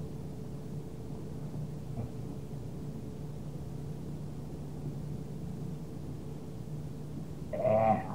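Steady hum and hiss of the recording while no one speaks, with one faint tick about two seconds in. Near the end comes a short voiced sound from a person, like a brief 'mm'.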